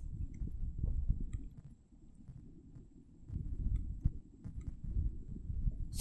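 A low, uneven rumble with no speech, dipping quieter for about a second near the middle.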